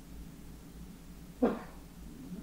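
A single short, sharp cry with a clear pitch about one and a half seconds in, over a steady low hum.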